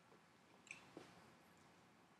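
Near silence: room tone in a pause, broken by a faint brief squeak and a soft tick about a second in.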